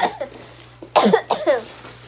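A person coughing twice, two sharp coughs about half a second apart, starting about a second in.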